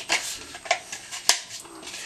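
Plastic sprouter bowls and cups knocking and rubbing together as they are handled. Several sharp clicks stand out, the loudest a little over a second in.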